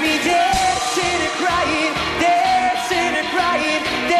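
Pop song with a lead vocal singing held, wavering notes over a steady, full band accompaniment.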